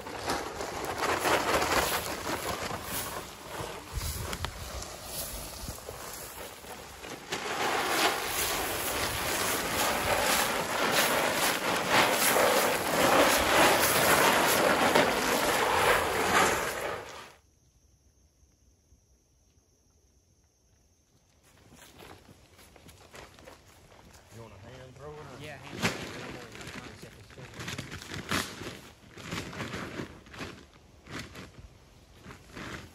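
Dry shelled corn pouring from a paper feed bag into a wooden trough feeder and onto leaf litter: a loud, steady rushing rattle that stops abruptly about seventeen seconds in. After a few seconds of near silence come quieter rustling and footsteps in dry leaves.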